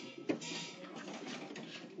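Handling noise from a heavy wheeled object being tipped and worked on: a short knock about a third of a second in, then low scuffing and rustling.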